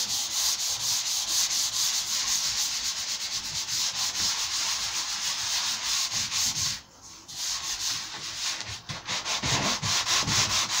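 Hand sanding a primed MDF cabinet door with a 320-grit sanding block: quick, even back-and-forth rubbing strokes of the abrasive over the dry primer, flatting back the first coat. The strokes break off briefly about seven seconds in, then carry on.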